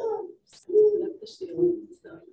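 Muffled, indistinct human voice: short murmured remarks from a listener in the room, in three brief stretches, hummed and low.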